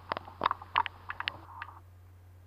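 Gear shifter of a Sturmey Archer 8-speed internal gear hub being worked, giving an irregular run of about ten light clicks that stops about 1.7 seconds in.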